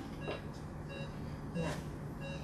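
Patient monitor beeping steadily, a short electronic tone repeating a little more than once a second, in the manner of a pulse-oximeter pulse beep. A brief soft hiss comes about a second and a half in.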